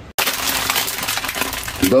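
Plastic instant-noodle packets crinkling and crackling as they are handled, a dense run of small crackles that starts just after a brief dropout.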